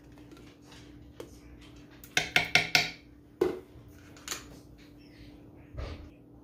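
A metal spoon scraping and clinking against a glass jar of minced garlic and a nonstick cooking pot, with scattered clicks and a quick run of sharp knocks about two seconds in.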